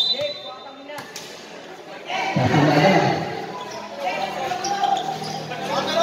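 A basketball bounces once on the court floor about a second in. From a little past two seconds, spectators' and players' voices and shouts fill the hall.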